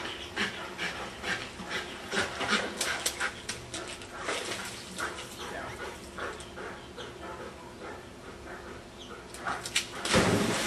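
A dog whining and panting in short, irregular bursts, two or three a second.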